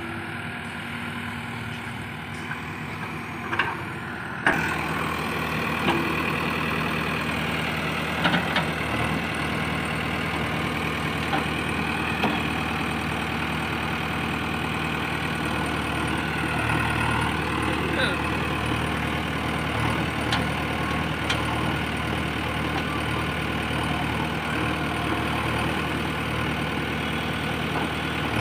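JCB 3DX backhoe loader's diesel engine running steadily while the backhoe digs, with several sharp knocks scattered through. The sound gets louder about four and a half seconds in.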